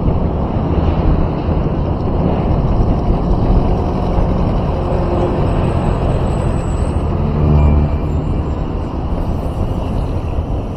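Steady, loud road noise from a moving vehicle: engine and tyre rumble with wind on the microphone. An engine note swells briefly about seven and a half seconds in.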